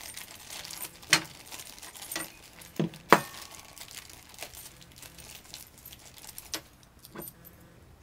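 Small metal parts clinking and clicking as a steel cable connector is handled and fitted into a metal electrical box: scattered sharp clicks, the loudest about three seconds in.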